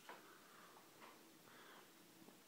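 Near silence: room tone with a couple of faint ticks, about a second apart.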